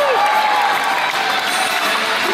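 Live show audience cheering and applauding over a steady din of crowd noise, with voices calling out; a shout falls in pitch right at the start.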